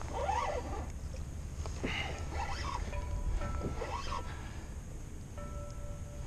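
Seabirds crying repeatedly over open water, short rising and falling calls at irregular intervals, over a steady low rumble of wind and water on the microphone.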